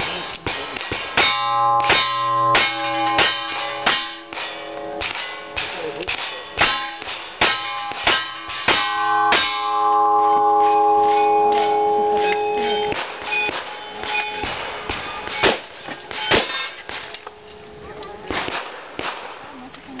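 Revolver shots fired in quick succession at steel plate targets, each hit answered by a bright metallic clang that rings on. The shooting thins out in the second half, with two more loud shots and clangs a few seconds before the end.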